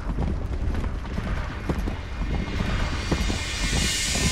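Deep, steady rumbling drone with scattered irregular knocks, and a rising hiss-like swell near the end that leads into music: the opening sound bed of a documentary score.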